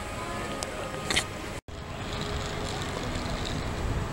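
Steady outdoor background noise with a low rumble, broken by a split-second gap of silence about one and a half seconds in.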